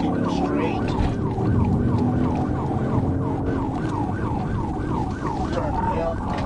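Police car siren on a fast yelp, about four falling sweeps a second, with the patrol car's engine and road noise underneath as it speeds through traffic.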